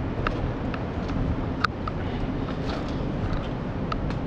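Steady low rumble of outdoor urban background noise, with several short sharp clicks and taps scattered through it, the loudest about a second and a half in.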